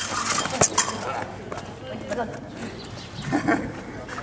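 Steel rapier blades striking together: a few sharp metallic clinks in the first second of the exchange, followed by short raised voices.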